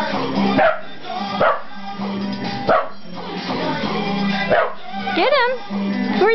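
Scottish terrier barking: four short, sharp barks spaced about a second apart, over background music.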